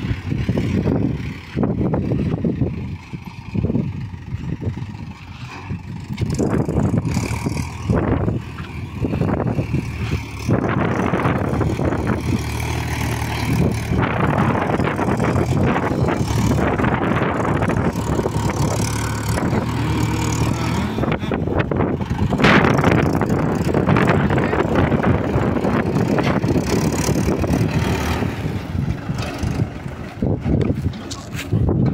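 Mahindra 475 DI XP Plus tractor's four-cylinder diesel engine pulling a heavily loaded trolley, running steadily and getting louder as it approaches and passes close by near the end. Wind buffets the microphone in gusts during the first third.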